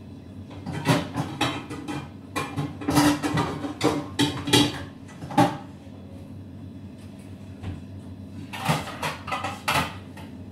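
Hands working a large heap of pizza dough on a stainless steel table: clusters of short knocks and slaps in the first half and again near the end, over a steady low hum.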